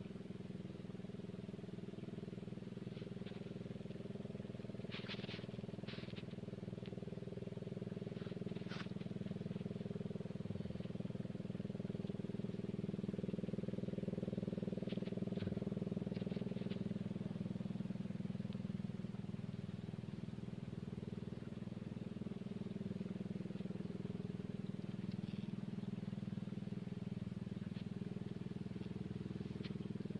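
Boat engine droning steadily, growing louder toward the middle and then easing off a little.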